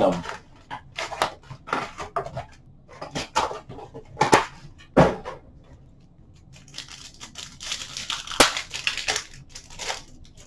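Cardboard hobby box and card packs being handled, with a series of short knocks and rustles. Near the end comes a denser run of crinkling and tearing as a trading-card pack wrapper is ripped open.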